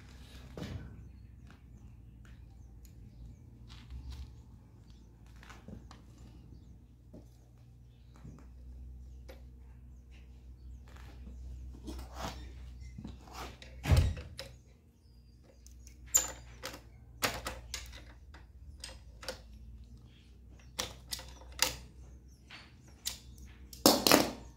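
Scattered metal clicks and knocks as steel pedal cranks and fittings are handled on a trike's front wheel axle, over a low steady hum. There is one louder knock about halfway through and a quicker run of sharp clicks near the end.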